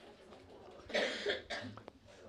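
A person coughing once, a short two-part cough about a second in, followed by a couple of faint clicks.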